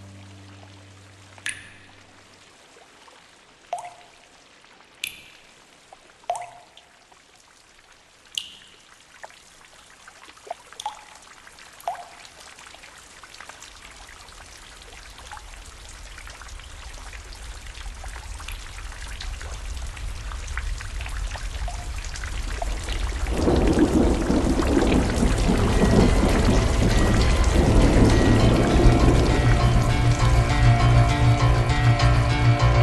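Single water drops plinking one at a time at irregular intervals, each at a different pitch, then a rushing of rain or pouring water that swells steadily and becomes loud for the last few seconds, with music coming in near the end.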